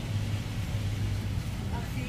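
A steady low hum with a light hiss: the room noise of a large shop.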